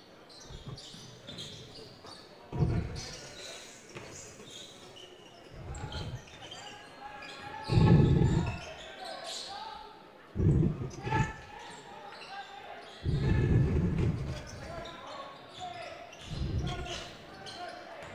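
Basketball being dribbled on a hardwood court, heard as irregular dull thuds, with scattered voices from the court and stands.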